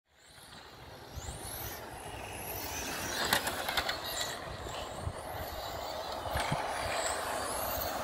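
Radio-controlled cars running on a track: high-pitched electric motor whines rising and falling as they accelerate and slow, over a steady outdoor rumble, fading in at the start.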